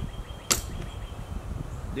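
A single sharp click about half a second in: the air hose's quick-connect coupler snapping onto the Kobalt 8-gallon air compressor's fitting, with low handling noise around it. The compressor itself is not yet running.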